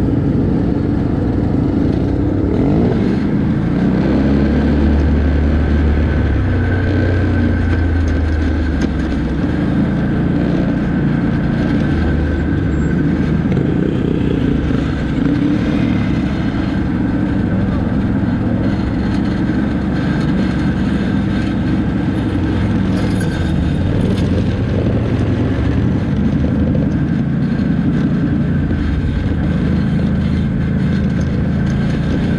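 ATV engines running the whole time, the engine note shifting up and down with the throttle as the quads ride and slow. It is loudest and lowest about four to nine seconds in.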